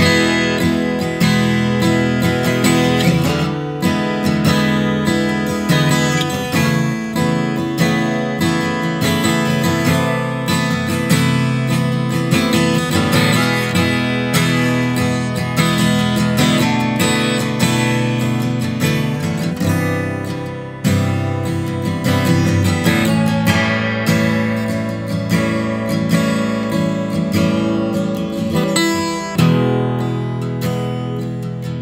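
Vintage 1950s Gibson J-50 slope-shouldered acoustic guitar played solo, with chords strummed and picked in a steady run and a short break about two-thirds of the way in.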